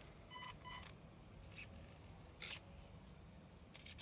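Near silence, with two faint, very short electronic beeps just after the start and a few soft clicks later on.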